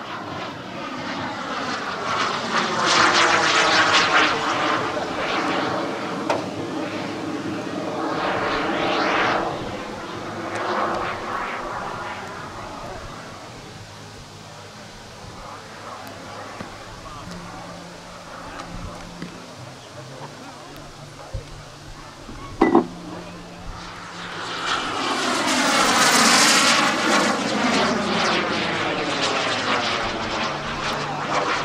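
Kerosene turbine of a large-scale RC Hawker Hunter model jet flying past twice. Its whine swells and fades on each pass, with a sweeping, swishing shift in tone as it goes by. The first pass peaks a few seconds in and the second near the end, with a sharp click about three-quarters of the way through.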